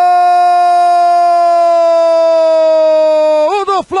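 Football commentator's long held cry of "gol", one loud sustained note slowly sinking in pitch, announcing a goal. It wavers and breaks off about three and a half seconds in.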